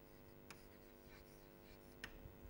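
Faint chalk strokes on a chalkboard as words are written: a few short scratches and taps over a steady low hum.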